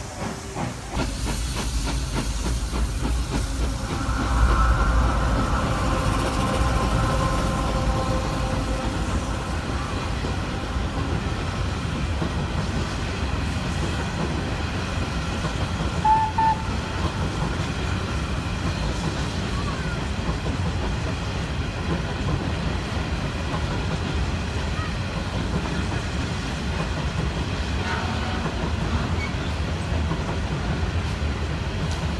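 Long coal train of empty steel hopper wagons rolling past close by: a steady rumble of wheels on the rails. A louder stretch with some held tones comes about four to ten seconds in, and a short tone at about sixteen seconds.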